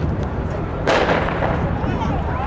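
Starting gun fired once to start a 400 m race: a single sharp crack about a second in, trailing off briefly, over a steady low outdoor rumble.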